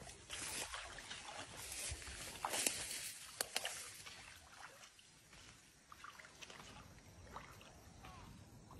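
Faint sloshing of water and light rustling as a man wades through a shallow pond with a cast net. Short clicks and splashes come mostly in the first half, then the sound settles lower.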